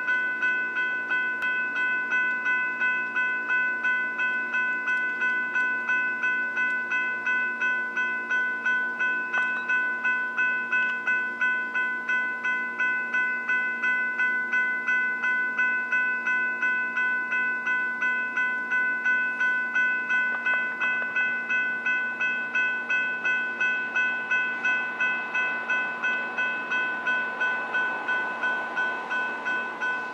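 Railroad grade-crossing warning bell ringing in rapid, evenly spaced strokes. Near the end, the rushing noise of the approaching Amtrak train rises under it.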